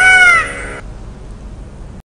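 A single animal-call sound effect, one cry about half a second long that rises and then falls in pitch, over the last fading notes of a chiming jingle. After that there is only a faint hiss.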